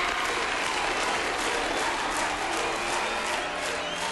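Audience applauding and cheering loudly, with a few high whistles or shouts standing out from the clapping.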